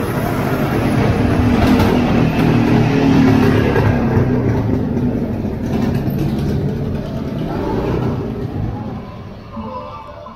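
A motor vehicle's engine running close by on a narrow street, over general street noise. It swells over the first few seconds, then fades gradually.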